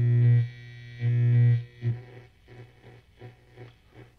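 Mains hum and buzz from an electric guitar's single-coil pickups, sent through a distorted Universal Audio Dream '65 Reverb amp emulation. The player puts the hum down to being too close to the computer and other electronic equipment. The hum swells to a peak, cuts out about half a second in, comes back for about half a second, then falls to faint short bursts.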